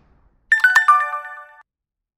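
A short chime jingle for a video outro. A few quick bell-like notes step downward about half a second in, ring together for about a second, then cut off.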